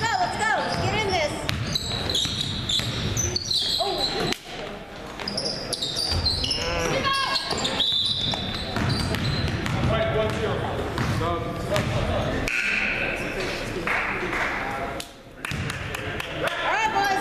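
Basketball game sounds on a hardwood gym floor: the ball bounced in repeated dribbles, sneakers squeaking in short high squeals, and voices of players and bench calling out.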